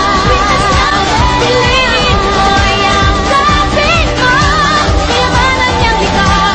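Pop song with a singer's melody, the voice wavering and sliding in pitch, over a dense, steady backing track.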